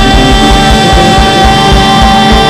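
Live Carnatic progressive rock band playing loud, with one long high note held by the lead vocalist over distorted guitars and a steady kick drum beating about four times a second.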